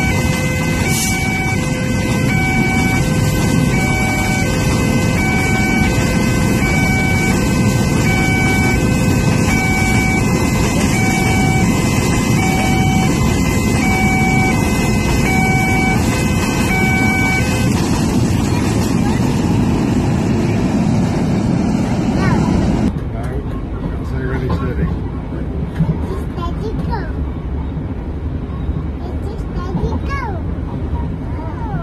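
A container freight train rumbling past, while an electronic railway-crossing alarm sounds two alternating tones about once a second until about 17 seconds in. About 23 seconds in the sound cuts to something quieter, with voices.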